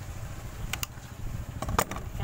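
Scissors snipping through a thin plastic water bottle. There are a couple of sharp crackling clicks about three-quarters of a second in and a louder pair near the end, over a steady low engine-like rumble.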